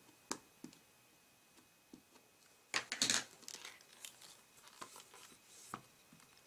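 Quiet handling noises at a stamping desk: a few light taps of a VersaMark ink pad against a clear photopolymer stamp, then a brief paper rustle about three seconds in, followed by softer rustling as card stock is handled.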